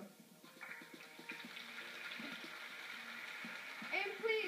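Studio audience applauding, a steady clatter of clapping that builds up about half a second in.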